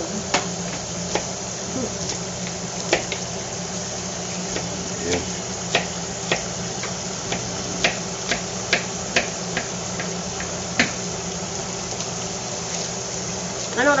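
Kitchen knife chopping a bunch of fresh cilantro, the blade knocking on the cutting surface in irregular taps, sometimes a couple a second, which stop about three-quarters of the way through.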